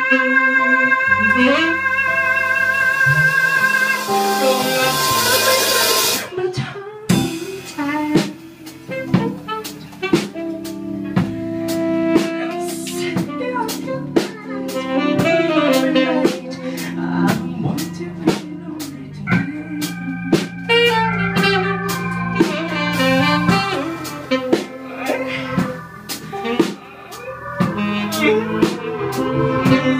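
Live soul-jazz band playing an instrumental passage: electric guitar, keyboard and drum kit. About four seconds in a cymbal swell builds and stops abruptly near six seconds, after which the drums keep a steady beat under the guitar and keys.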